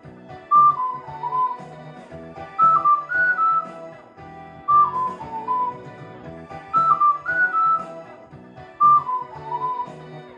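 Soprano ocarina in D (Focalink) playing a short melodic phrase about every two seconds, the phrases alternately falling and rising, over a karaoke backing track with a bass line.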